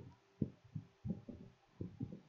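Faint, soft low thumps, about six at irregular intervals.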